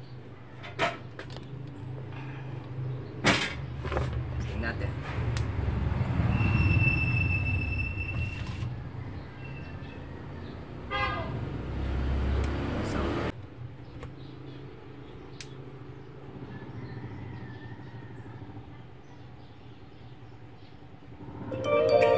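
Clicks and knocks of a portable Bluetooth party speaker being handled, over a steady low hum, with a high tone held for about two seconds near the middle. Near the end, music comes on loud from the speaker as its volume knob is turned up. This is a test after the battery was reconnected, checking whether the speaker still cuts out at high volume.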